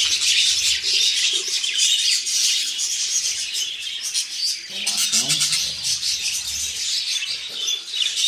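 A room full of budgerigars chattering and chirping, a dense, continuous warble of quick high chirps.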